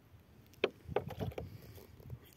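Water poured into a hole in dry soil, splashing and sloshing in a few irregular bursts from about half a second in as the burrow floods with muddy water.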